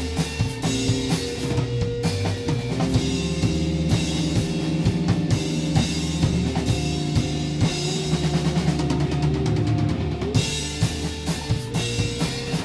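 A small rock band playing live: electric guitar, bass guitar and a drum kit, with steady drumming under sustained guitar and bass notes. The cymbals thin out briefly and crash back in about ten seconds in.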